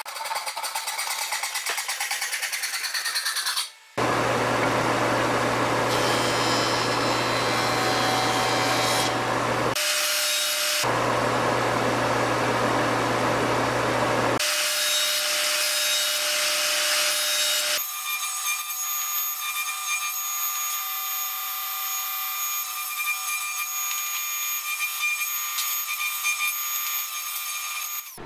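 A hand saw cutting a rough-sawn pine board in quick, even strokes for about four seconds. After a sudden change, a jointer runs and cuts loudly with a low hum, pausing briefly near ten seconds. From about eighteen seconds a quieter, steady high whine of a table saw follows.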